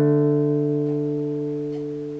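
Acoustic guitar ringing out a single struck two-note power chord (D5: 5th fret on the A string with 7th fret on the D string), fading slowly and evenly.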